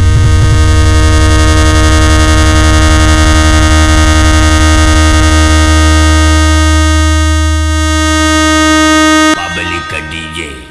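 Loud electronic DJ remix music: a heavy bass line pulsing rapidly under a sustained, buzzing synthesizer tone. The music cuts off abruptly near the end, giving way to a brief voice sample.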